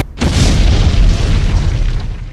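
Background rock music cuts off, and a moment later a loud cinematic boom sound effect hits, its deep rumble slowly fading.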